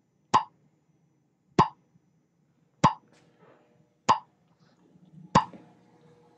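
A single sharp tap, like a drip, repeating five times at an even pace of about one every second and a quarter, each with a short ring, over a faint low hum.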